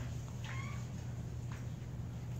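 A brief high squeak about half a second in and a faint click a second later, over a steady low room hum.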